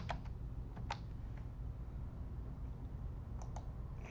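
A few scattered keystrokes on a computer keyboard, two of them close together near the end, over a low steady hum.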